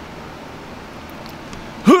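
Steady hiss of a box fan running, with a man's short rising "huh?" near the end.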